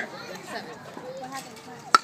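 A baseball bat hitting a pitched ball: one sharp crack near the end, the loudest sound here, over the low chatter of spectators.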